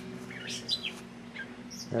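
Small songbirds chirping: a few short, high, quick chirps scattered over two seconds.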